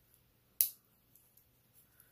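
Stainless steel push-button deployant clasp on a watch bracelet snapping shut with one sharp metallic click about half a second in, followed by a few faint ticks.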